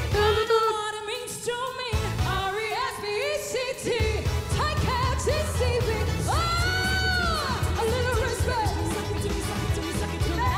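Pop vocal trio singing a 1960s hit live with a backing band. The band's bass comes in about two seconds in and fills out at four, and a singer holds one long note that bends up and back down around seven seconds in.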